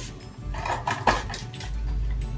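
A few light clinks and taps of small plastic items being handled, with short sharp strokes about half a second and a second in.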